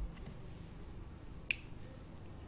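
Quiet room tone with a single short, sharp click about one and a half seconds in.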